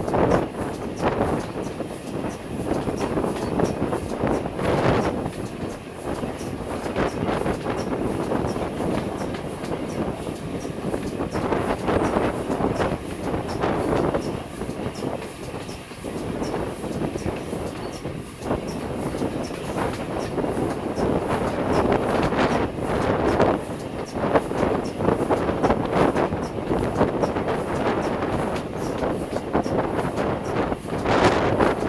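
LNER A4 Pacific steam locomotive 60009 running along the line, heard from beside its cab, a steady rush of noise broken by irregular clatter from the wheels and track.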